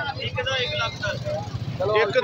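Men's voices talking indistinctly, over a steady low hum.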